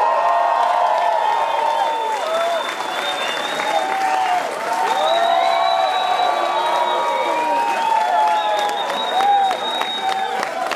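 Concert audience cheering, shrieking and applauding loudly and steadily, many voices overlapping over a dense patter of clapping.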